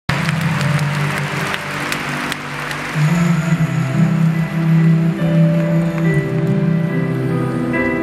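A large stadium crowd applauding and cheering for about the first three seconds, over the slow, held chords of a soft instrumental song introduction. The crowd noise then falls away, leaving the long sustained chords.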